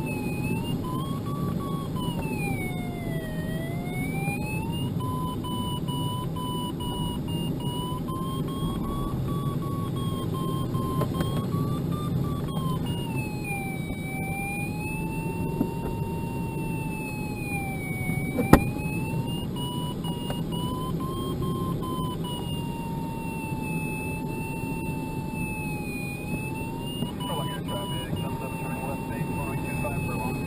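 A glider's audio variometer gives a continuous tone that slowly rises and falls in pitch as the climb and sink rate changes while the sailplane circles. Under it is the steady rush of air over the cockpit. There is one sharp click about two-thirds of the way through.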